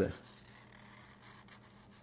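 Felt-tip marker drawing a circle on paper: a faint, soft rubbing scratch of the tip on the sheet.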